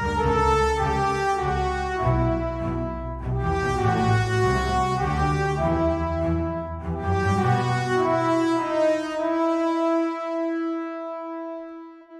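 Orchestral sample-library mockup: French horns play the melody over a rhythmic low-string bass line. About ten seconds in, the bass stops and the horns hold a long final note that dies away.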